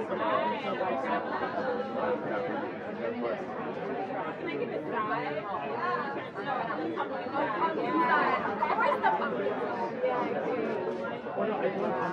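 Many voices talking at once: a steady hubbub of overlapping conversation in a large room.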